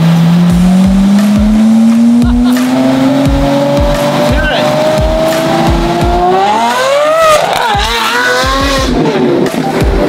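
Car engine accelerating, its pitch climbing steadily for about six seconds, then rising fast into a wavering squeal. Under it runs a steady music beat of about two thumps a second.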